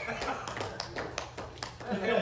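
Scattered, uneven hand claps from a few people, with quiet talking underneath.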